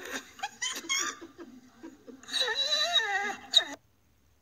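A person laughing and giggling in a high, wavering voice, ending in a short sharp click.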